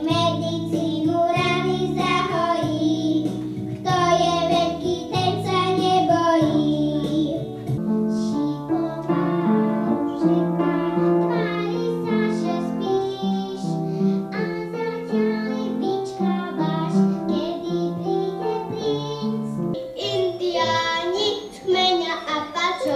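Young children singing a song into a microphone, accompanied on an upright piano; a different song starts near the end.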